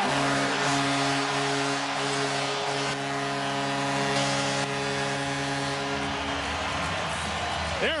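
Arena goal horn sounding one long steady blast over a cheering hockey crowd just after a home goal; the horn stops about six seconds in while the cheering carries on.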